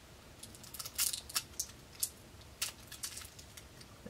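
A small cosmetics package being picked at and torn open by hand: a faint scatter of sharp clicks and crackles.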